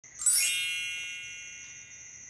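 A bright, shimmering intro chime sounded once about a quarter second in, sweeping quickly upward at its onset, then ringing on and slowly fading.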